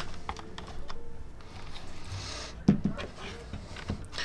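Light plastic clicks and scraping of a hand tool working the clips and fabric of an opened-up UE Megaboom portable speaker, scattered and irregular, with a short rustle about two seconds in.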